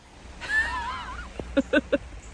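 A person's drawn-out, wavering vocal sound, followed by a few short, quick bursts of laughter.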